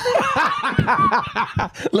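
Two men laughing together, a run of broken chuckles.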